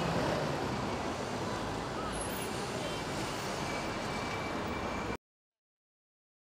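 Steady noisy ambience with no clear pitched sound, cutting off suddenly about five seconds in to complete silence.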